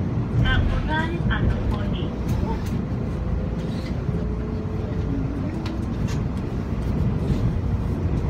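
Cabin noise of a TEMU2000 Puyuma Express electric multiple unit running at speed: a steady low rumble of wheels and running gear heard inside the passenger car, with a faint thin tone in the middle that drops in pitch about five and a half seconds in. The onboard announcement voice ends in the first two seconds.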